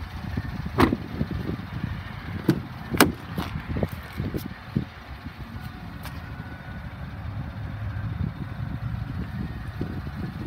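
A pickup truck's front door being unlatched and swung open: a handful of sharp clicks and knocks from the handle and latch in the first five seconds, over a low rumble of handling and wind.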